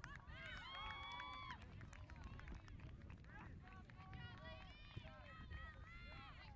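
Faint, distant shouting of players and spectators calling across an open field, with one long drawn-out call about a second in, over a low rumble.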